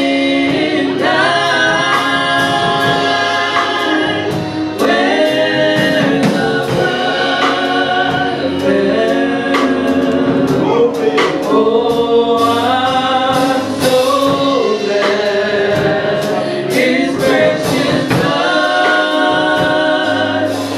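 Live gospel worship song: women's voices singing lead into microphones, backed by a band with a drum kit keeping a steady beat.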